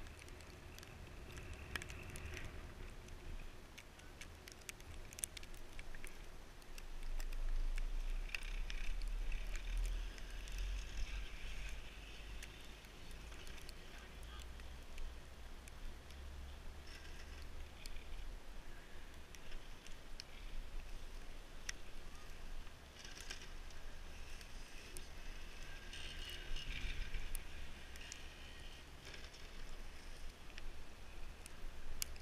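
Wind noise on the microphone of a camera riding an open chairlift, gusting louder about a quarter of the way in and again near the end, with scattered small clicks and creaks from the moving chair.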